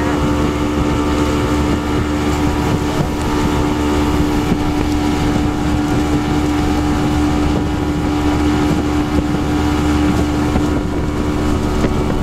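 Mercury 175 outboard motor running at a steady speed, a constant drone over rushing water, with wind buffeting the microphone.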